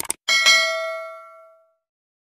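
A quick double click, then a single bell ding that rings out and fades over about a second and a half: the notification-bell sound effect of a subscribe-button animation.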